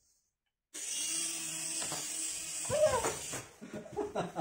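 Small toy RC helicopter's electric motor and rotor whirring steadily, starting suddenly about a second in and cutting out after about two and a half seconds. A short vocal exclamation rises over it near the end.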